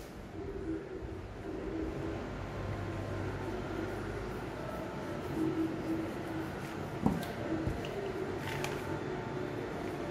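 Wooden rolling pin rolling out puff pastry dough on a wooden board: a soft, low rolling sound over a faint steady hum, with a sharp knock about seven seconds in.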